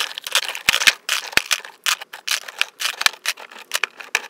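Lipstick tubes pulled one after another out of a plastic grid drawer organiser, a rapid, irregular run of clicks and clacks of plastic and metal cases knocking together and against the dividers.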